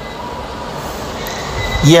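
A steady mechanical hum with a faint high whine, with no strokes or knocks. A man's voice starts just before the end.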